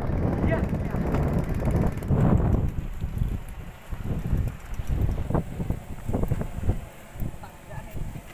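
Strong gusty wind buffeting the microphone, with people's voices calling out over it.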